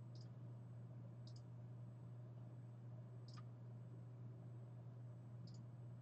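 Faint computer mouse button clicks, a handful spread over a few seconds, two of them in quick pairs, over a low steady hum.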